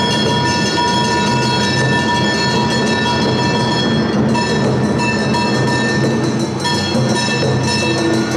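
Live Awa odori street band music (narimono) playing steadily, with long high held notes over a dense lower backing.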